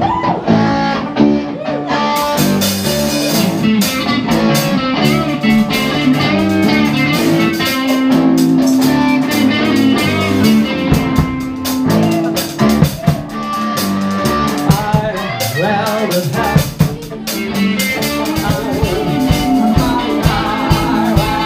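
Live rock band playing an instrumental passage, with electric guitar, bass and drum kit. The cymbals come in about two seconds in.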